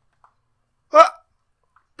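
A single short, abrupt vocal "uh" about a second in, like a hiccup, with silence around it.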